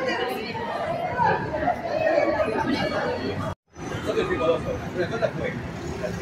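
Indistinct chatter of people's voices, with no clear words. It cuts out completely for a moment just past the middle and then resumes.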